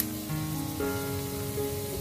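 Background music with held notes over the steady sizzle of chopped onion and garlic frying in oil and margarine in a stainless steel pan.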